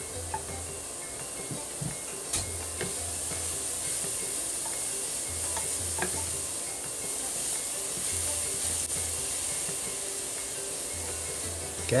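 Grated carrots sizzling softly in a pan while being stirred with a wooden spatula, with now and then a light scrape or tap of the spatula on the pan. A low hum comes on for about a second every few seconds.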